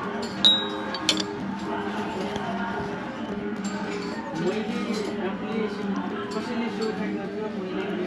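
A sharp metallic clink with a short high ring about half a second in, then a lighter click just after, from the metal plate the dumplings sit on being knocked, over background music.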